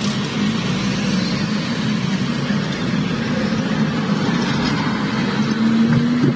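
Steady car and street traffic noise picked up by a phone inside a vehicle, with a low hum running underneath that grows a little stronger near the end.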